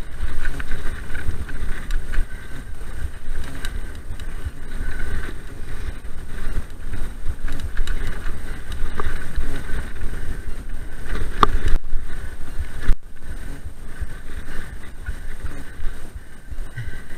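Mountain bike ridden fast down dirt singletrack: wind buffets the action-camera microphone over the tyres' rumble and the bike's rattle, with a sharp knock about eleven and a half seconds in.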